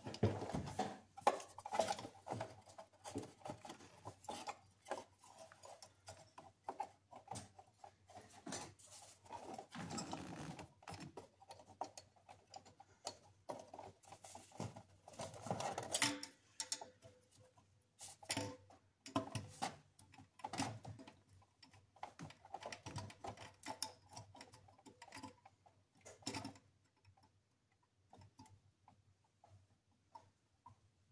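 Irregular small clicks, taps and scrapes of a new thermostat and its housing being fitted by hand in a car's engine bay. They die away about four seconds before the end.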